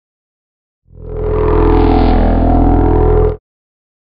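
Short transition sound effect: a steady, low, many-toned hum that swells in about a second in, holds level, and cuts off abruptly.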